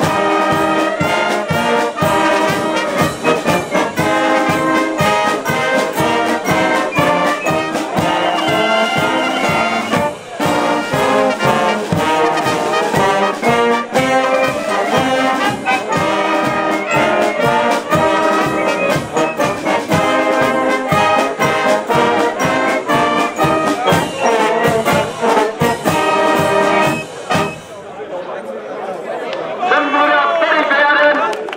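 Brass band with drums playing a march: trumpets, trombones and saxophones over a steady beat of bass drum, snare and cymbals. The playing stops near the end, leaving people's voices.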